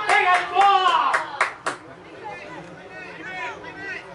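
Spectators clapping in a quick, steady rhythm while shouting a cheer for the players. The clapping and shouting stop about halfway through, leaving quieter crowd chatter.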